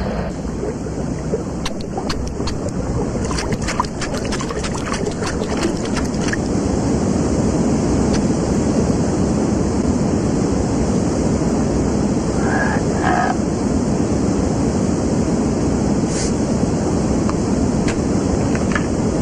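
Cartoon soundtrack effect of rushing river water, growing louder about six seconds in as the current nears a waterfall.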